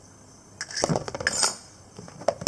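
An egg being cracked with a table knife: a quick run of sharp taps and crunches of shell, starting about half a second in and lasting about a second.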